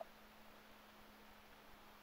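Near silence: faint steady hiss with a faint low hum.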